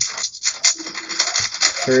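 A 3x3 speed cube being turned quickly, a dense run of small plastic clicks and scrapes.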